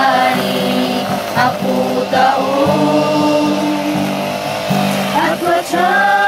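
Mixed group of young male and female voices singing a gospel song together, with acoustic guitar accompaniment and long held notes.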